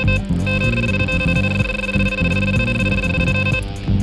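An electronic bite alarm sounding a run: a short beep, then from about half a second in one continuous high tone that cuts off suddenly shortly before the end. This is the sign of a fish taking line off the rod. Guitar music plays underneath.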